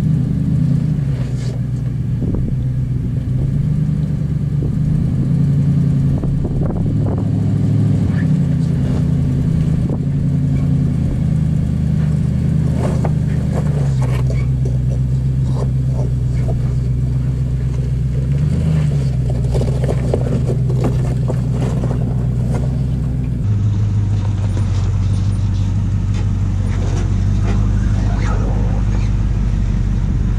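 First-generation Toyota Sequoia's V8 engine running at low crawling revs as the SUV works over rocks, its note stepping up and down with the throttle. Scattered knocks and crunches of tyres rolling over loose stone run throughout.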